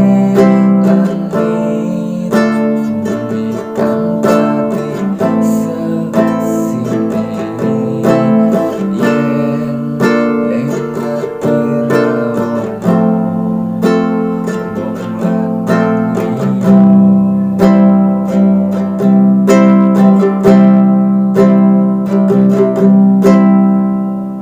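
Nylon-string classical guitar strumming chords in a steady rhythm through the chorus progression of C, G, A minor, E minor, F, C, G.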